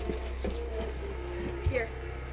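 A steady low hum under faint voices, with a light knock or two and a short spoken word near the end.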